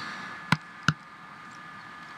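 Two sharp clicks of a computer mouse, about a third of a second apart, over a faint steady two-tone hum.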